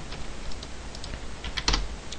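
Computer keyboard keys tapped a few times, light scattered clicks, as a Python script is saved and rerun from the terminal.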